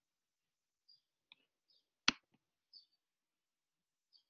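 A few faint clicks, with one sharper click about two seconds in, and brief faint high-pitched blips between them.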